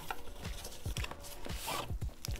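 Paperboard retail box being opened by hand: the flap and white inner tray scraping and tapping, with a few light clicks and a short scrape near the end, over quiet background music.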